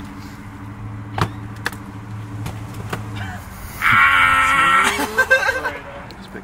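A vehicle engine runs steadily with a low hum that fades out after about three seconds, with a single knock about a second in. About four seconds in comes a loud rasping scrape lasting about a second, then a few short clatters, as bags and gear cases are handled at the back of the van.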